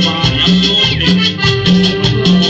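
Live band playing Latin dance music through a PA, with a steady bass-and-drum beat and a shaker. A high held note slides down about a second in.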